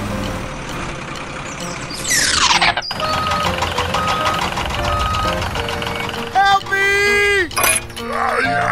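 Dubbed toy-video sound effects: a truck engine running, then a fast falling whoosh that cuts off sharply about three seconds in. Three evenly spaced steady beeps follow, and near the end comes a short cartoon-like sound sliding down in pitch.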